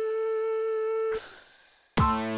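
A single steady humming tone that slides up into pitch, holds for about a second and cuts off. A fading whoosh follows.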